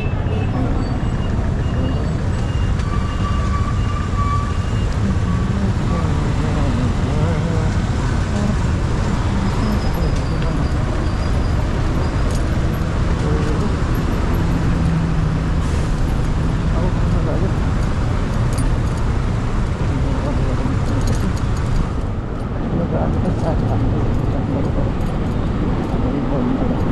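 Riding a motorbike at low speed through city traffic: a steady low rumble of the bike's engine and the vehicles around it.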